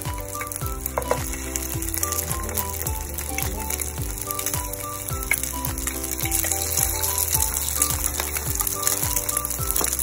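Battered pork rib pieces frying in hot oil in a wok, a steady sizzle that carries on as more pieces are dropped in. Background music with a steady beat plays under it.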